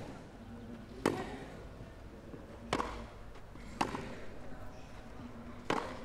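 Tennis ball knocks on a grass court: four short, sharp strikes spaced unevenly over a few seconds, over quiet crowd ambience.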